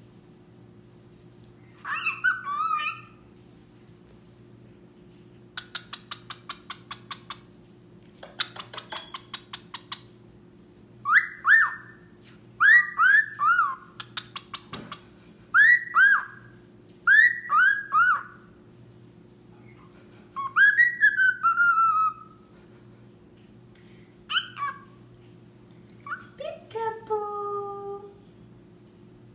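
Cockatiel whistling a made-up song: short whistled notes that glide steeply in pitch, mostly in groups of two and three, and a longer warbled phrase. Earlier, about six seconds in, comes a run of quick, evenly spaced clicks.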